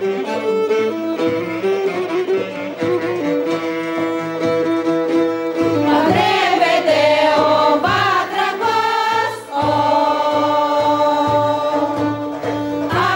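Greek Thracian folk music: a violin and a clarinet play a melody, then about six seconds in a women's choir comes in singing over the instruments.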